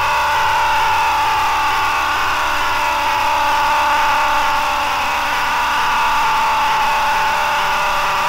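A loud, steady electronic drone with one held pitch and its overtones, with no beat under it, closing out a speedcore track.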